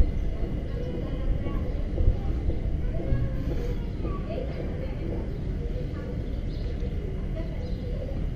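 Outdoor ambience: a steady low rumble with faint, indistinct voices in the background.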